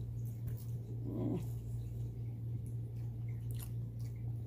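A pet's short, falling whimpering call about a second in, over a steady low hum, with faint clicks of chewing and a spoon.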